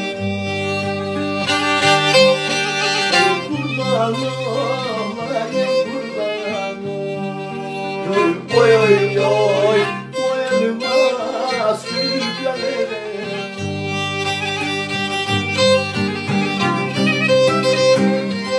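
Instrumental interlude of Black Sea folk music: a Karadeniz kemençe plays a bowed melody over acoustic guitar chords.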